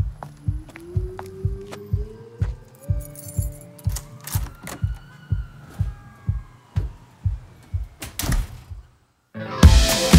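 Instrumental intro of a live rock band: a steady low thumping pulse at about two beats a second, with a tone sliding upward over it and later one sliding down. Near the end it cuts out for a moment and the full band comes in much louder with drums, bass and guitar.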